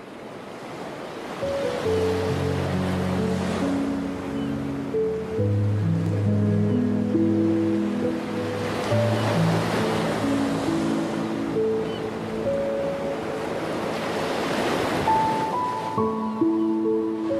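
Ocean surf washing ashore in slow swells, under soft background music of long held notes.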